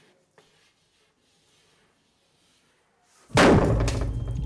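Faint chalk scratching on a blackboard. About three seconds in, a sudden loud bang as something thrown smashes against the board, leaving a deep rumble that carries on.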